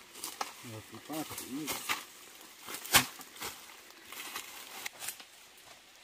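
Bundles of split bamboo strips knocking and clattering as they are handled and stood upright, with one sharp knock about three seconds in and a few lighter clicks around it.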